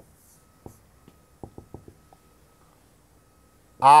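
Felt-tip marker writing on a whiteboard: a few faint, short taps and ticks, clustered about a second and a half in, as characters and dots are put on the board.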